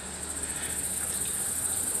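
Outdoor insects, crickets or cicadas, trilling steadily in a high-pitched, rapidly pulsing chorus.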